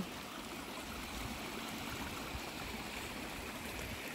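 A steady, even rush of outdoor background noise with faint low rumbles and no distinct events.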